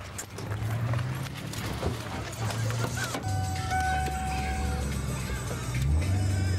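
Car engine droning low inside the cabin of a moving Mustang Cobra, rising and dropping back a few times, with car-radio music playing over it.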